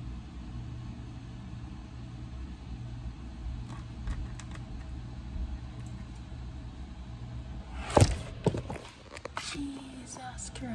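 Steady low hum of room or appliance noise with faint taps while candles are set into a cake. About eight seconds in comes a sharp knock, then a smaller one, as the phone is handled.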